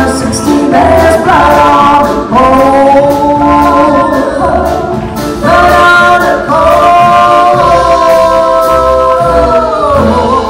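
Two women singing a duet in harmony into microphones, with instrumental accompaniment. The vocal line holds two long notes, the second sliding slightly downward near the end.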